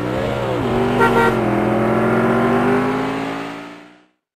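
Car engine sound effect: the engine revs up and down, then runs at a steady, slowly rising pitch and fades out near the end. There is a brief hiss about a second in.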